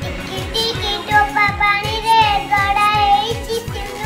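A young girl singing a melody with long held notes, over background music with a steady beat.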